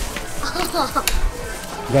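Voices talking over background music, with a few light clicks about halfway through.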